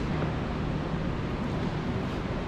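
Steady low rumble and hiss of workshop background noise, with no distinct event standing out.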